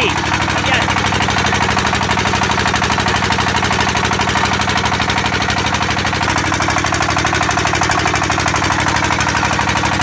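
Dong Feng single-cylinder stationary diesel engine running steadily and belt-driving a seawater pump, a fast, even chugging that holds constant throughout.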